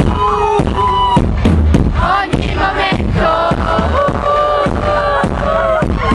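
Live pop band playing through a concert PA with a steady drum beat, a melody sung over it.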